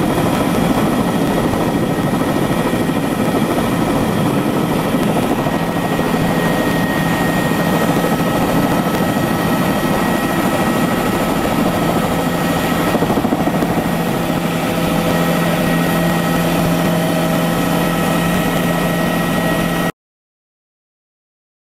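Tour helicopter's engine and rotor running loud and steady, heard from inside the cabin as it lifts off and climbs. A steady low hum firms up about six seconds in, under a thin high whine.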